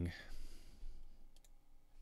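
Quiet room tone through a close headset microphone, with a few faint clicks about one and a half seconds in.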